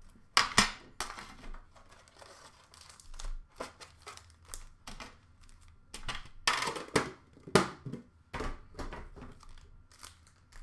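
Upper Deck hockey card pack wrappers crinkling and tearing as packs are ripped open, with a sharp knock of the metal tin being handled about half a second in. The rustling comes in irregular bursts and is busiest in the second half.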